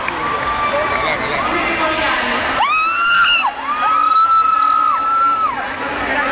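Crowd of fans cheering, with several long, high-pitched screams held over the noise; the loudest burst of screaming comes about two and a half seconds in.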